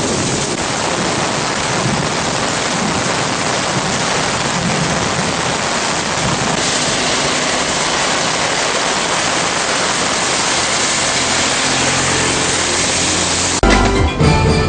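Heavy tropical rain pouring down onto a road, a steady dense hiss. The hiss turns brighter about halfway through. A short broadcast transition sting comes right at the end.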